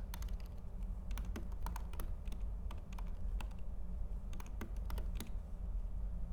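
Typing on a computer keyboard: an irregular run of keystrokes that stops near the end, over a steady low hum.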